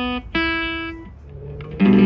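Amplified acoustic guitar playing single ringing notes one after another: a note struck about a third of a second in that fades away, a quieter lull, then a loud new note near the end.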